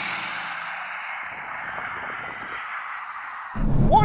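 Edited transition whoosh: a steady band of hiss-like noise with no engine note in it, fading a little and cutting off suddenly near the end.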